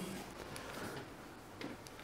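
Quiet room tone in a lecture hall, with a few faint ticks.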